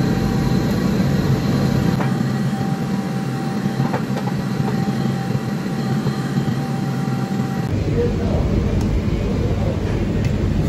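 Steady, loud rumble of a commercial gas wok range and kitchen ventilation running, with a metal ladle now and then knocking against the steel wok.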